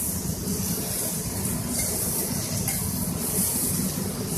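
Marinated beef cubes sizzling in oil on a hot flat-top griddle, a steady hiss over a low rumble.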